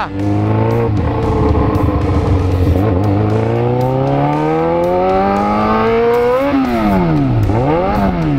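Yamaha XJ6 motorcycle's inline-four engine pulling hard in gear, its pitch rising steadily for about five seconds. About six and a half seconds in, the note drops away and then climbs again near the end as the engine revs freely with the gearbox slipped into neutral.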